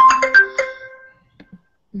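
Short electronic chime jingle from a browser quiz game: a quick run of a few bright tones that ring and fade out within about a second, the game's signal for a correct answer.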